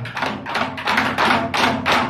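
A group striking Korean barrel drums (buk) with wooden sticks in unison: a quick, even run of sharp 'tta' strokes, about four a second, fading near the end.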